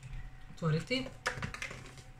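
Small plastic cap of a cosmetic cream tube being worked open by hand: a few light, sharp plastic clicks and taps.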